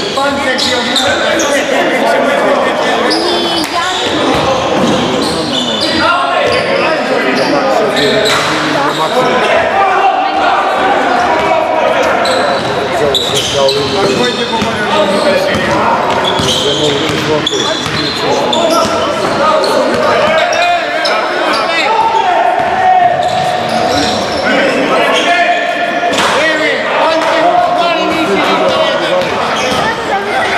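A basketball being dribbled and bouncing on a hardwood sports-hall floor during play, with players' and spectators' voices echoing in the hall.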